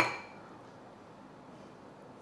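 A single clink of a utensil against a glass mixing bowl right at the start, ringing briefly and fading within about half a second, followed by quiet room tone.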